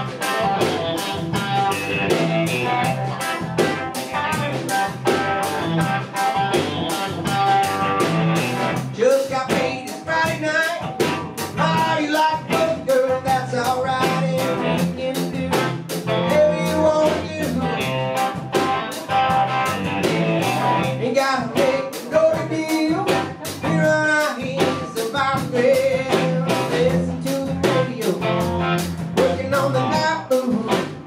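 Live blues-rock band playing: electric guitar, electric bass and drum kit keeping a steady beat, with a man singing over it from about nine seconds in.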